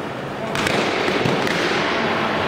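Eskrima fighting sticks striking in sparring, a few sharp clacks with the strongest pair about half a second in, echoing in a large hall, with voices over it.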